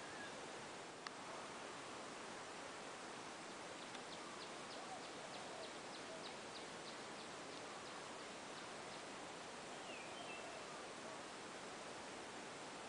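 Faint outdoor ambience with a steady hiss, in which a bird calls a run of short high notes at about four a second for some five seconds, starting about four seconds in, then gives a brief falling note near the end. A single faint click sounds about a second in.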